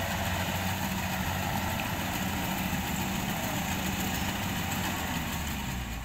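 Rice combine harvester running steadily in the paddy, its engine and machinery giving a low, even hum that fades slightly near the end as it moves off.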